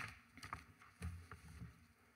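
Papers being handled close to a desk microphone: faint rustling with a few small clicks and a soft low knock about a second in.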